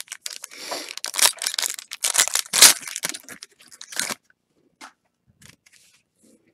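A foil trading-card pack torn open by hand, the wrapper crackling and crinkling in quick bursts for about four seconds, then only a few light ticks.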